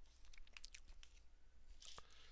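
Near silence with faint, irregular small clicks.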